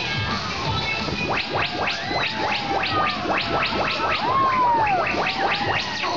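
Fairground ride music over the loudspeakers, with a fast run of short rising sweep effects, about five a second, starting about a second in, and a tone that glides up and back down near the end.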